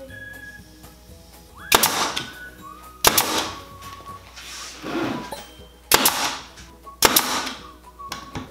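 Nail gun firing 1¼-inch finishing nails to tack the top board onto a glued pine box: four sharp shots, each with a short hiss trailing after, spaced unevenly about one to three seconds apart.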